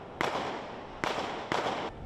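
Three sharp gunshots, the first near the start and two more about a second in, each followed by a short echoing tail: gunfire in an exchange of fire between attackers and police.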